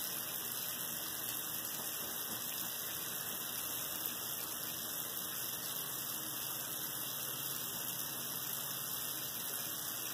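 Water running steadily from a sink faucet into the basin.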